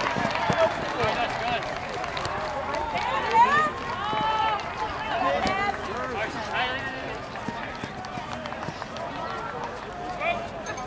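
Several voices shouting and calling out at once from players and people on the sidelines of a soccer match, overlapping so that no words are clear. A few louder rising calls come about a third of the way in.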